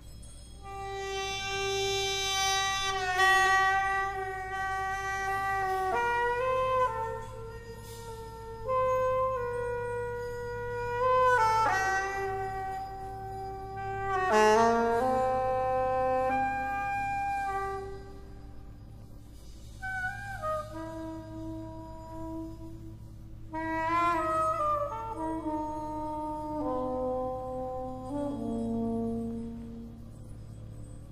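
Soprano saxophone playing a slow free-jazz line of long held notes that step up and down, with a brief pause about two-thirds through, over a faint steady low hum.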